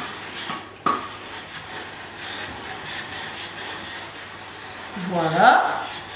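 Calor steam-generator iron hissing steam as it glides along a cotton sleeve. The hiss starts abruptly about a second in and holds steady for about four seconds. A brief bit of a woman's voice comes near the end.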